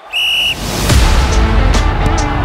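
A short, steady whistle blast, then intro music with a deep bass that starts about half a second in.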